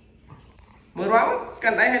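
Young children singing a short repeated phrase in high voices, starting about a second in.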